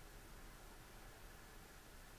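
Near silence: faint steady room tone with a light hiss.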